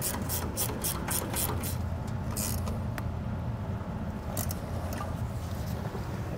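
Half-inch ratchet wrench clicking in quick, even strokes, about three a second, as a disc brake caliper's mounting bolts are run down tight. The clicking thins to a few single clicks later on.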